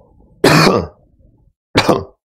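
A man coughing twice, two loud short coughs a little over a second apart, the first longer than the second.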